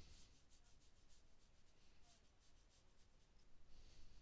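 Faint, soft scratchy strokes of a thin watercolour brush dragged across paper, a quick series that dies away after two or three seconds, over near silence.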